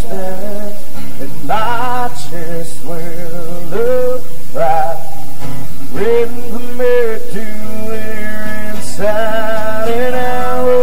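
Two acoustic guitars playing a country song with a man singing, the voice holding long wavering notes.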